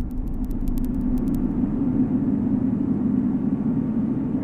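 Steady low rumbling drone of cinematic sound design, with a scatter of faint crackling clicks in the first second or so.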